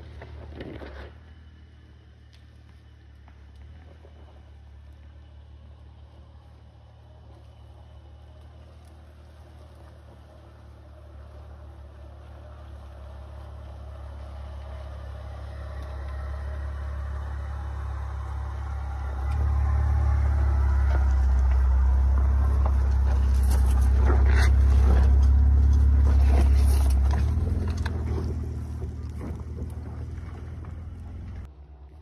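Lifted Honda Ridgeline's 3.5-litre V6 running at low speed as the truck crawls down a steep dirt trail, growing steadily louder as it nears and passes about two-thirds of the way in, then fading as it moves away. Several sharp snaps and knocks from tyres on rocks and sticks come at the loudest point.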